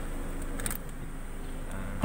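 Steady low hum in a car cabin, with a brief click about half a second in from the manual seat adjuster being worked.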